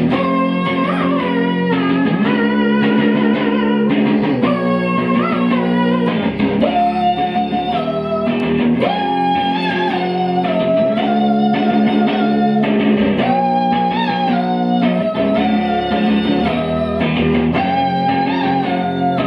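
Electric guitar played live through an amplifier. A low, repeated figure runs under a higher melody of held notes that bend in pitch.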